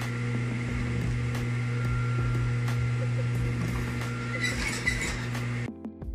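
Industrial sewing machine's motor running idle with a steady electric hum, no stitching rhythm, with some fabric handling noise near the end. The hum cuts off abruptly just before the end.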